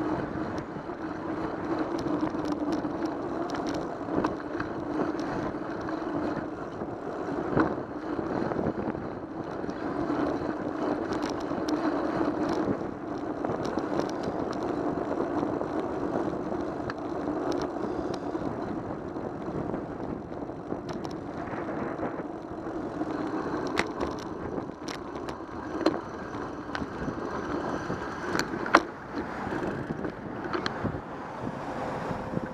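Bicycle rolling on asphalt, heard through a bike-mounted camera: a steady tyre and road rumble, with a few sharp knocks as bumps jar the mount, the loudest near the end.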